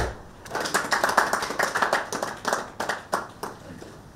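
A small group of people clapping briefly for about three seconds, preceded by a single sharp knock at the very start.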